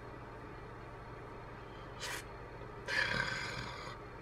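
Quiet room with a low steady hum, broken by a brief sniff about two seconds in and a breathy huff lasting under a second near the three-second mark.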